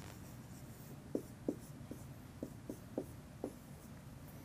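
Dry-erase marker writing on a whiteboard: a quick run of light taps and short scratchy strokes, bunched between about one and three and a half seconds in.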